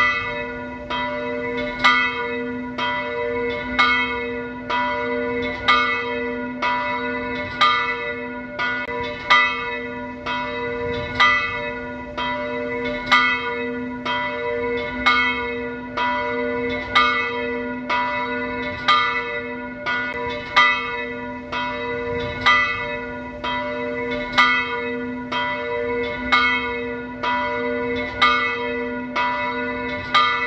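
Church bells ringing in a steady peal, about one strike a second, with the long hum of the bells sounding on underneath the strikes.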